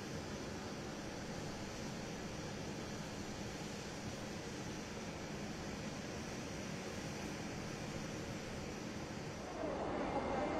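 Steady airport apron noise beside a parked jet airliner: an even rushing hiss with a faint low hum, growing louder just before the end.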